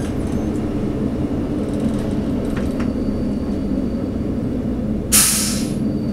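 Class 842 diesel railcar running with a steady drone heard from the driver's cab, then about five seconds in a short, loud hiss of compressed air from the air brakes as it draws into a station platform.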